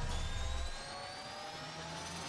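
Synthesized riser sound effect: a hissing whoosh with several tones climbing steadily in pitch, over a deep rumble that fades out less than a second in.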